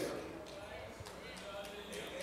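A pause in preaching inside a church: quiet room sound with faint, indistinct voices and a soft low thump about a second in.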